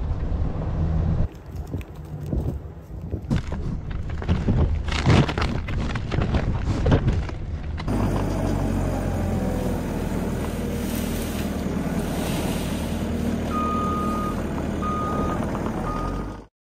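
Skid steer engine running steadily, with its back-up alarm beeping three times near the end. Before it, a stretch of irregular short knocks and rustles.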